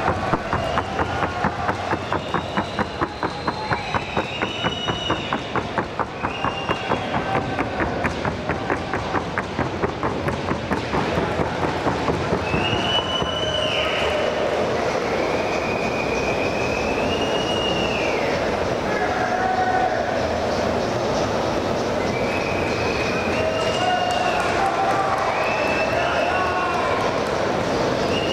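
A Colombian trote y galope horse's hooves striking the ground at a fast, even trot, about five hoofbeats a second. The hoofbeats stop after about twelve seconds, leaving a steady hum of crowd noise with some voices.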